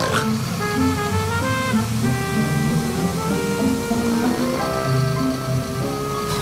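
Background music: a tune of short held notes stepping up and down over a low bass line.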